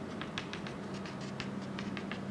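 Chalk tapping on a chalkboard while a dashed line is drawn: a quick, uneven run of about a dozen short taps over a steady low room hum.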